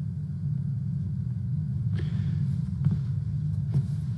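Steady low rumble of street traffic, with a few faint clicks in the second half.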